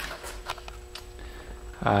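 Quiet room tone with a steady low hum and a few faint ticks, then a short spoken "uh" near the end.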